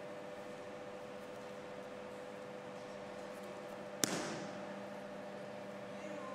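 A single sharp slap of a body taking a breakfall on tatami mats as an aikido partner is thrown, about four seconds in, over a steady hum.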